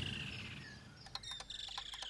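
A swoosh dies away at the start, and then faint high chirps, like birds in the background, come in short, quick ticks over a thin high whistle from about a second in.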